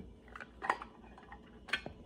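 Tarot cards being handled and turned over close to the microphone: a few quiet, light clicks and taps, the sharpest a little under a second in and two more close together near the end.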